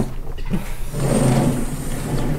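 Vertical sliding chalkboard panel pushed along its tracks: a steady rolling rumble with a faint high whine above it. It pauses briefly, then starts again about half a second in.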